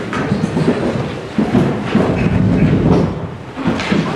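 A man's low, muffled voice praying aloud close to the lectern microphone, heavy in the bass, with a brief lull near the end.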